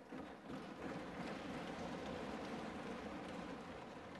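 Many members thumping their desks in applause, a dense rain-like patter. It builds in the first second, then holds steady.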